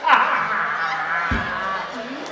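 A man's long, loud cry, starting with a sharp drop in pitch and then held at one pitch for nearly two seconds. A short dull thump sounds a little past halfway through.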